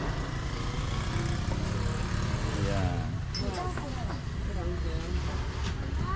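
A few people talking off-mic in short snatches over a steady low rumble.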